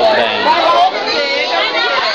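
Crowd chatter: many people talking at once in a crowded room, with no single voice standing out.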